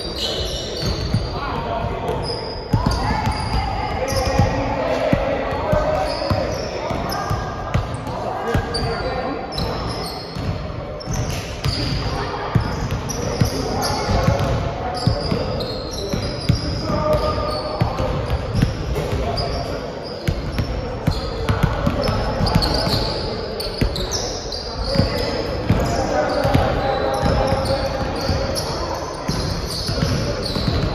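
Basketball bouncing on a hardwood gym floor during a pickup game, with repeated dribbles and knocks, sneakers squeaking, and players' voices, all echoing in a large gym.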